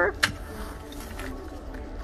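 A single sharp click from handling a zippered leather portfolio, then low steady background noise.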